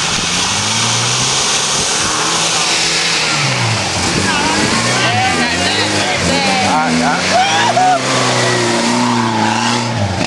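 Toyota Meru (Land Cruiser Prado) 4x4 engine working under load as the SUV drives out of a river crossing and climbs a soft sandy bank, the engine note rising and falling repeatedly as the throttle is worked in the second half.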